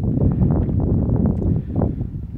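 Wind buffeting the phone's microphone: a low, uneven rumble that swells and dips in gusts.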